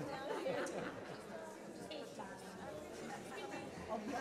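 A congregation's many voices chatting and greeting one another at once, overlapping with no single voice standing out.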